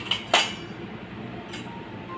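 Metal utensil clinking against a stainless steel bowl: three sharp clinks in the first half second, the loudest a third of a second in, and one more about a second and a half in.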